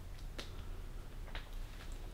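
Faint low rumble with a few soft, irregular clicks: footsteps and handling noise from someone walking through an empty, stripped-out room while carrying a phone.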